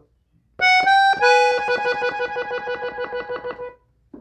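Gabbanelli button accordion, tuned in E, playing treble notes: a couple of separate notes, then a single note repeated rapidly for about two seconds before stopping shortly before the end.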